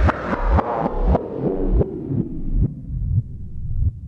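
Drum and bass track playing through a DJ mixer with its highs cut away progressively, as a low-pass filter closes, until mostly the kick drum and bass are left. The kicks keep pounding at about two a second, each dropping in pitch.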